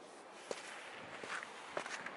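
Footsteps on a sandy beach scattered with chunks of ice: irregular sharp steps, one about half a second in and a few more near the end, over a steady soft hiss.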